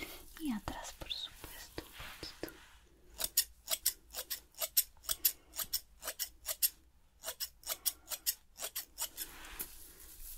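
Hair-cutting scissors snipping through hair in a quick, crisp run of snips, about three or four a second, starting about three seconds in.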